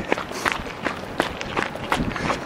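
Footfalls of runners on a park path, a steady running rhythm of about three steps a second.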